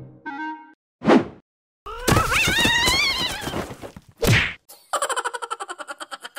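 Cartoon slapstick sound effects: a brief tone, two whooshes a few seconds apart, a wavering pitched sound lasting over a second, then a fast rattle of about a dozen clicks a second near the end.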